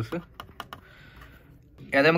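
A quick run of about four light clicks in the first second: metal tweezer tips tapping on a laptop motherboard.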